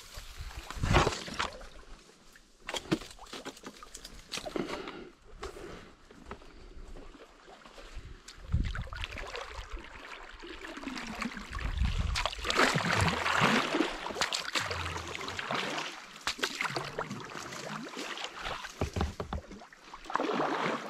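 Kayak paddle strokes in calm water: the blades dip and pull with irregular splashes, and water drips and trickles off them between strokes.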